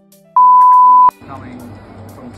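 A censor bleep: one steady, loud, high-pitched beep of about three-quarters of a second, starting about a third of a second in. It blanks out a word kept secret, the name of the new shaft.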